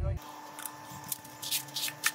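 Gloved hands working a steel tape measure along a wooden board: about five short, high-pitched scrapes and rustles.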